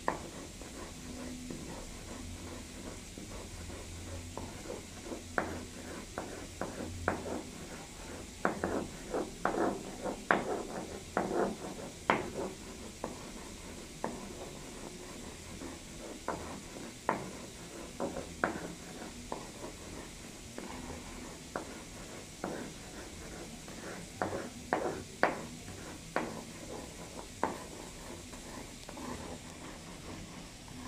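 A pyrite rock being pounded and crushed to powder with a hand tool on a tiled floor: irregular sharp knocks and taps. They come in bursts, busiest from about a fifth to nearly halfway through and again a little past three quarters of the way.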